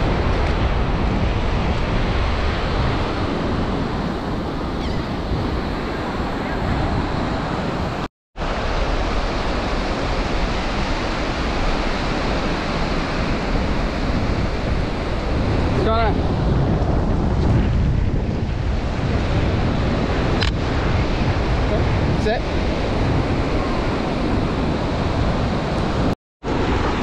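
Ocean surf breaking and washing up the beach, with wind buffeting the microphone as a steady low rumble. The sound cuts out completely for a moment about eight seconds in.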